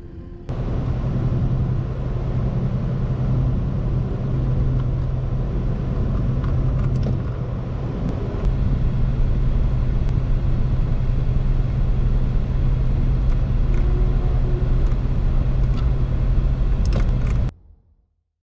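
Car driving at speed: steady road and engine noise with a strong low hum, starting about half a second in, with a few faint clicks, and cutting off suddenly near the end.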